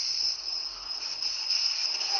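Crickets trilling steadily, a continuous high-pitched sound with no breaks.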